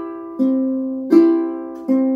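Ukulele fingerpicked in the 'Puxa 3' pattern: strings 4, 2 and 1 plucked together, then string 3 alone, alternating about every three-quarters of a second. Each pluck is left ringing into the next.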